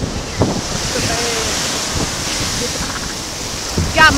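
Ocean surf washing up the beach, a steady rushing wash, with wind buffeting the microphone in low rumbles.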